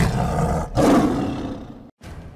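Logo sound effect: a sharp hit, then an animal roar that swells just under a second in and fades away, cutting to silence near the end.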